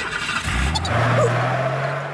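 Cartoon sound effect of a vehicle engine revving up over a rushing noise. The engine's pitch rises about half a second in, then holds steady.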